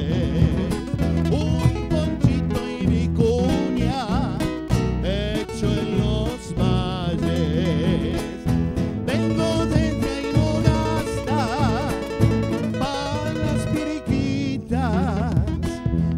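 Live Argentine folk music: nylon-string guitars strummed and picked over the steady beat of a bombo legüero drum, with a melody line wavering in vibrato above.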